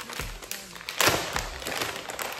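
Clear plastic resealable bag crinkling as it is pulled open by hand, with a sharp, louder crackle about a second in.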